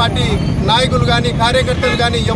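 A man speaking Telugu in a raised, high-pitched voice, over steady low background noise.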